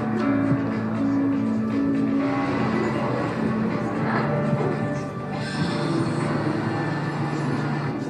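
Instrumental soundtrack music with long held low notes, played back over loudspeakers in a hall from a projected presentation video.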